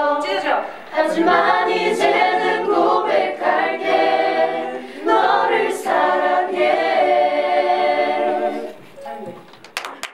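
Unaccompanied singing voices holding long notes with vibrato, fading out near the end with a few faint clicks.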